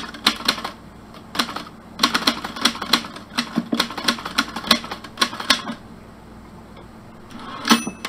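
Typewriter keys clacking in quick bursts of strokes with short pauses between them, and a bell ringing once near the end, like the carriage-return bell.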